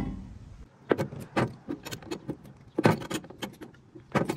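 Metal fittings clinking and clicking as a brass ball valve and a metal spray wand are handled and threaded together, a string of irregular sharp taps, loudest about three seconds in.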